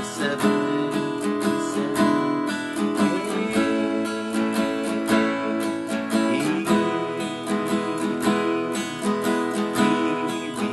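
Acoustic guitar strumming open chords in a down, down-up, down-up waltz pattern. The chord changes about three seconds in and again near seven seconds.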